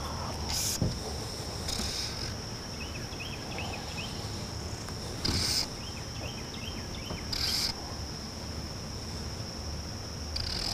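Insects singing a steady high-pitched drone, with faint small chirps and four short rushing noises spread through it.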